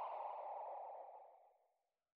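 The tail of an outro sound effect: a hissy, echoing fade that sinks lower in pitch and dies away to silence about a second and a half in.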